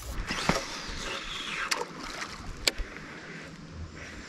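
Three short clicks and knocks of fishing gear being handled in a small boat, about half a second, a second and three quarters, and two and three quarter seconds in, over a soft wash of water and wind.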